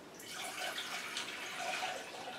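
Water pouring from a glass jar into a stainless steel saucepan, a steady pour that starts just after the beginning.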